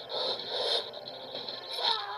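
A man straining with effort, breathy grunting through clenched teeth, over a steady hiss.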